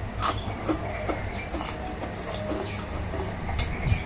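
A few sharp crunches from someone biting and chewing a crispy tumpi cracker, a fried mung-bean fritter chip, over a steady low rumble.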